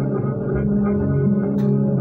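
Warr guitar played in a free improvisation: sustained, overlapping low notes ringing together, with a sharp tap about one and a half seconds in.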